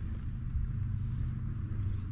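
Outdoor ambience: insects trilling steadily in a high, finely pulsing band, over a low steady rumble.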